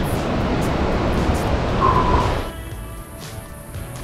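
Loud rushing wind and surf noise on a beach, cutting off after about two and a half seconds to quieter background music.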